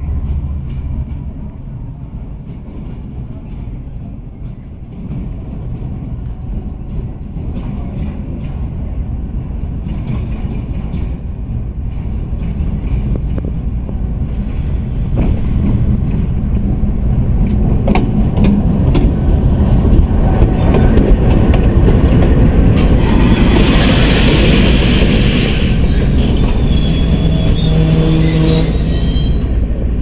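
Pakistan Railways diesel locomotive drawing a passenger train into the station: a low engine and wheel rumble that grows steadily louder as it nears, with clicks of wheels over rail joints. About three-quarters of the way through comes a loud high brake squeal lasting a few seconds as the train slows to stop.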